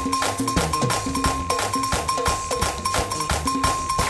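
Upbeat live praise music with fast, even percussion, about four strikes a second, over a moving bass line, and no singing.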